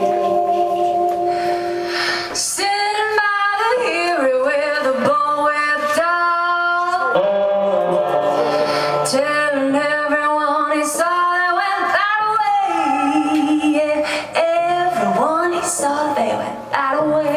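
A woman singing lead vocal live with the band, in long held notes that bend and waver in pitch.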